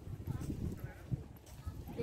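Handheld walking outdoors: a low rumble of wind on the microphone with irregular thuds of footsteps, and faint voices in the background.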